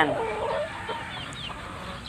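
Chickens in a pen clucking softly: a low cluck right at the start, then a few faint, short, high chirps a little over a second in.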